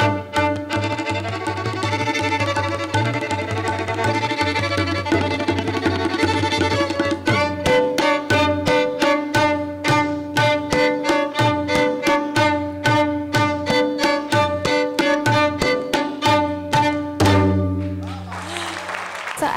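Violin playing an Indian classical piece with hand-drum accompaniment. From about halfway the drum strokes come quickly and evenly under a repeating violin phrase, and the piece closes on a long held note just before the end.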